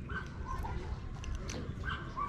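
Several short, faint high-pitched whines over a low steady rumble.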